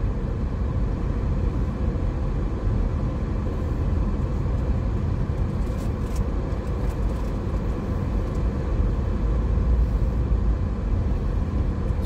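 Steady low road and engine noise of a car driving slowly, heard from inside the cabin, with a couple of faint ticks around the middle.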